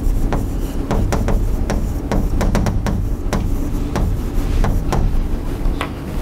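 Chalk writing on a blackboard: a quick, irregular run of sharp taps and short scratches as letters are written, over a steady low room rumble.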